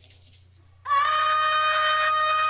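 A woman's singing voice comes in about a second in on one long held note, after a quiet pause with a faint low hum.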